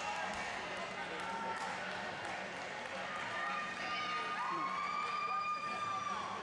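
Arena ambience: many people talking at a distance, with dull thuds of a gymnast's hands striking the pommel horse. A steady held tone rings out from about three seconds in.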